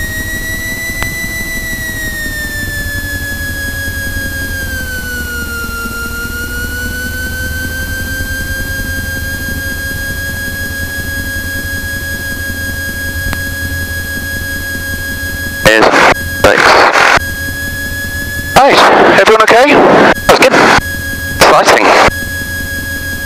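Socata TB10 light aircraft's four-cylinder Lycoming piston engine running at taxi power, heard as a low drone with a steady high whine that dips in pitch about five seconds in and then holds. Loud voices break in twice near the end.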